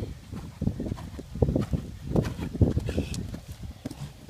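Horse's hoofbeats on sand arena footing at the canter: a run of dull, irregular thuds as it comes up to a vertical jump and takes off over it near the end.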